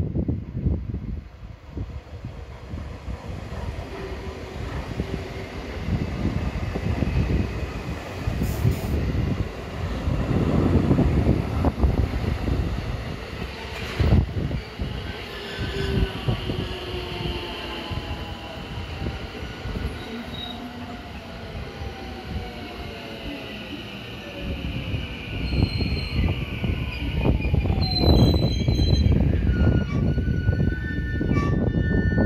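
JR West 223 series 2000 electric multiple unit pulling in and braking: wheels rumbling over the rails as the cars run past, with a whine that falls steadily in pitch as the train slows. High squeals come near the end as it comes to a stop.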